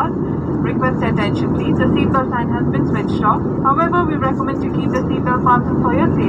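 Steady drone of a jet airliner cabin in flight, with engine and air noise heard from a window seat, and a voice talking over it.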